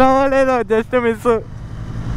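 A man's voice exclaiming and laughing over a motorcycle engine running steadily at low revs. The voice stops after about a second and a half, leaving only the engine hum.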